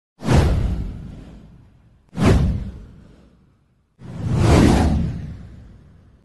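Three whoosh sound effects from a title-card intro, each a rush of noise that fades away over a second or two. The first two hit suddenly, and the third swells up more slowly near the end.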